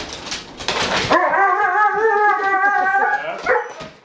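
Dog's hostile vocalising at another dog: about a second of harsh, rapid noisy sound, then a long wavering high-pitched cry lasting about two seconds, and a few short yips near the end.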